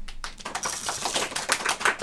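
Crunch Berries cereal poured from a measuring cup into a bowl: a dense rattle of many small clicks as the dry pieces land in the bowl and on each other.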